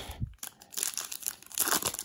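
Foil wrapper of a Panini Mosaic football trading-card pack crinkling as it is handled and torn open. The crackling starts about half a second in and runs on as a string of sharp little crackles.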